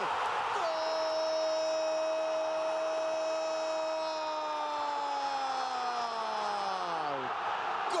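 A male Spanish-language TV football commentator's drawn-out goal cry. His voice is held on one high pitch for about three and a half seconds, then slides steadily downward as his breath runs out near the end. Under it is the steady noise of a cheering stadium crowd.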